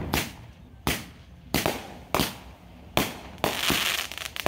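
Aerial fireworks shells bursting overhead: about five sharp bangs roughly two-thirds of a second apart, then a continuous crackle near the end.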